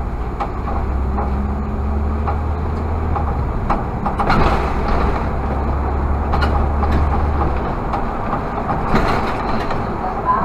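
Irisbus Citelis CNG city bus heard from the driver's cab while pulling along: the engine gives a strong low drone under throttle, then eases off about three-quarters of the way through. Small clicks and rattles from the cab are heard throughout.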